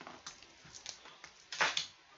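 Ballpoint pen writing on paper in a few short scratchy strokes, followed near the end by a louder brief noise.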